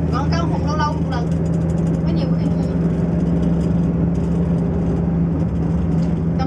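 Steady low engine hum and road noise inside the cabin of a moving bus.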